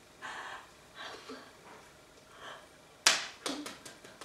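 Soft breaths and mouth noises, then a sharp slap about three seconds in followed by a few lighter taps: a signer's hands striking together as she signs.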